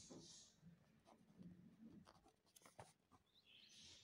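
Faint scratching of a pen writing cursive on squared exercise-book paper, in short irregular strokes.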